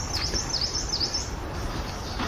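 A songbird singing a run of high, falling whistled notes, about three in the first second, over a steady outdoor background hiss.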